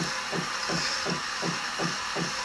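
KitchenAid KF8 super-automatic espresso machine frothing milk into two cups: a soft, steady hiss with a low pulsing beat about five times a second.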